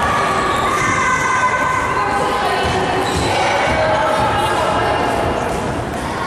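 Jump ropes slapping and feet landing on a hollow wooden floor in a large hall, a steady run of thuds from several people skipping at once.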